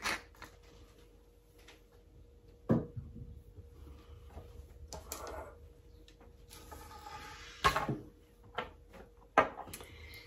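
Kitchen handling sounds: three sharp knocks of things being set down or handled on a worktop, the loudest about three-quarters of the way through, with faint rustling between them.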